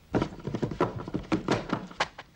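A quick, irregular run of soft thuds and knocks, about eight in under two seconds, starting a moment in. These are sound effects for clay hands patting and knocking against a clay head and a wooden tabletop.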